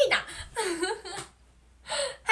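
A young woman laughing in breathy giggles, two bursts that die away about a second and a half in, with the laughter starting again near the end.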